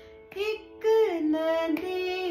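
A woman sings a slow Hindi film melody over a steady shruti box drone in A. The drone holds two steady notes. The voice comes in about a third of a second in and bends smoothly between held notes.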